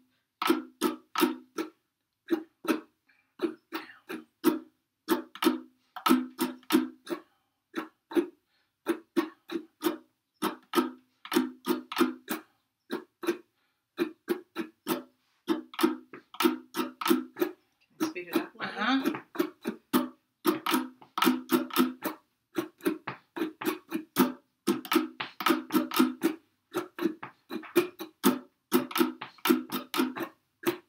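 Two ukuleles taking turns strumming the same rhythm, one measure each: down, down, up, up, down, up. The left hand grasps the neck to damp the strings, so each strum is short and percussive, with little ring.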